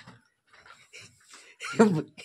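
A quiet room with faint breathy sounds for over a second, then a short burst of a person's voice near the end.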